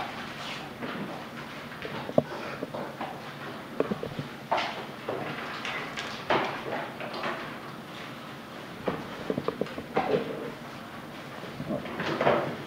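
Classroom handling noise: sheets of paper rustling as worksheets are handed out, with scattered clicks and knocks from desks and chairs.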